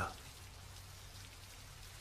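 Faint, steady rain falling, an even hiss, over a faint low hum.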